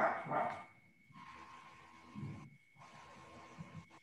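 A pet dog barking in the background of a video call: two quick barks right at the start, then a softer one about two seconds in.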